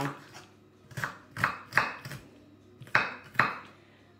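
Kitchen knife chopping onion on a wooden cutting board: about five sharp knocks of the blade on the board, unevenly spaced.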